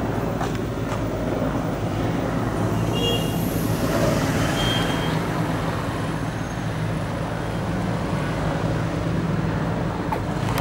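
Steady street traffic noise with vehicle engines running, a continuous low rumble.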